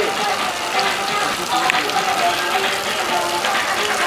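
Music playing with voices over it, above a steady hiss of water streaming down the set's backdrop.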